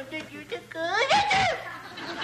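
A voice lets out one drawn-out wail about a second in, rising in pitch, holding, then falling away, after a few quick spoken sounds.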